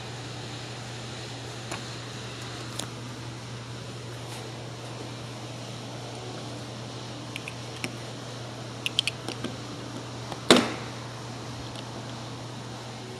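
Steady low hum of a fan, with scattered light clicks of the door handle's plastic and metal parts being handled and one sharper clack about ten and a half seconds in.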